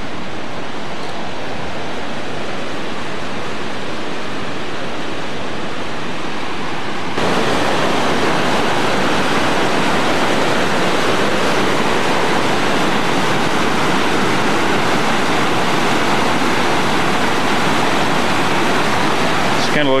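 Rushing river whitewater over rocks: a steady, even rush of water that jumps suddenly louder about seven seconds in and stays there.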